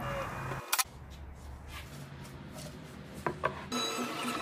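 Wood being handled and rubbed during hand work on a plywood cabinet shelf, quiet and even, with a sharp click just under a second in and a couple of light taps a little past three seconds.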